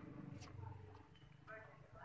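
Faint, distant voices over a low steady hum, with a single light click about half a second in.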